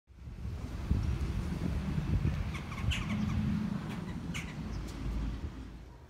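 A few short bird chirps over an uneven low rumble on the microphone.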